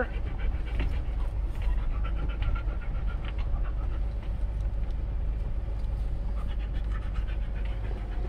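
A dog panting inside a camper van as it rolls slowly over a dirt road, over the steady low rumble of the engine and tyres.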